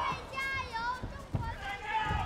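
High-pitched shouting voices in a large hall, in drawn-out wavering calls, with a single dull thud about a second and a half in.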